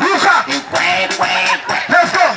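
Upbeat dance music over a sound system, with a man's voice on a microphone calling out in short, rising and falling bursts over it.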